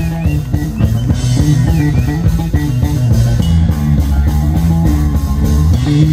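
Live rock band playing an instrumental passage: electric guitar, electric bass guitar and drum kit, with bent guitar notes near the start.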